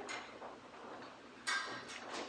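Quiet handling sounds of objects at the altar, with one sharp clink that rings briefly about one and a half seconds in.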